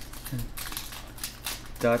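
Shiny foil wrapper of a Pokémon Ultra Prism booster pack crinkling and tearing as fingers pick the top seal open, a run of quick sharp crackles.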